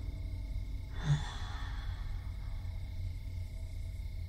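A woman's breathy sigh about a second in, fading away, over a low steady background drone.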